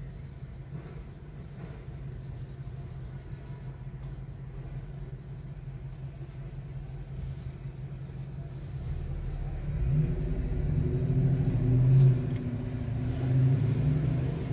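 A car's engine and road rumble heard from inside the cabin as it creeps in city traffic. The sound gets louder, with a low hum, from about nine seconds in as the car pulls forward.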